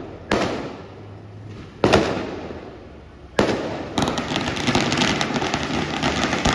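Diwali firecrackers going off: three separate bangs about a second and a half apart, each dying away slowly, then a long run of rapid crackling from about four seconds in.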